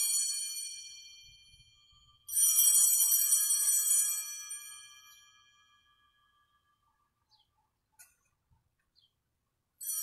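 Altar bells rung at the elevation of the chalice after the words of consecration: a bright jingling ring dies away, a fresh ring comes about two seconds in and fades over a few seconds, and another starts right at the end.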